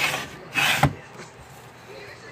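Toy elevator of a wooden dollhouse being worked by hand: a brief wooden scrape about half a second in ends in a sharp knock, with softer rubbing and handling noise around it.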